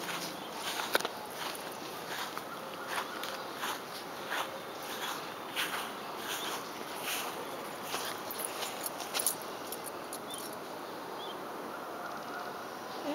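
Footsteps on a garden walk: irregular short scuffs and ticks about one or two a second over a steady background hiss, thinning out near the end.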